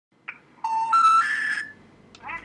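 Telephone special information tone: a click, then three steady beeps rising in pitch, each about a third of a second long. It is the network's signal that a call cannot be completed as dialled, as with a number no longer in service.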